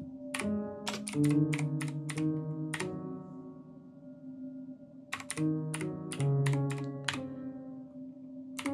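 Keystrokes clacking on a backlit computer keyboard. Each key sets off a held, layered musical note, so the typing plays a halting chordal melody. A quick run of about nine keys is followed by a pause with the notes ringing on, then another run of about eight.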